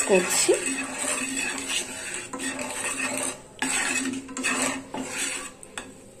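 Wooden spatula scraping and stirring in a nonstick frying pan, working spice powder into melted butter and oil in a string of irregular strokes that die away near the end.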